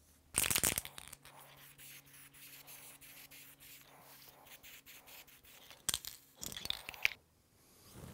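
Aerosol lacquer spray can spraying a finish coat onto a wooden marquetry panel: a short burst of spray about half a second in and two more shortly after the middle, with a faint low steady hum between.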